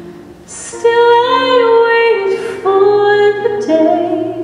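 A woman's soprano voice singing long held notes, with the orchestra accompanying softly underneath.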